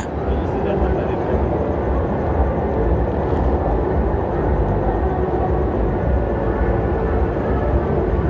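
Street ambience: a steady low rumble of vehicle noise, with indistinct voices in the background.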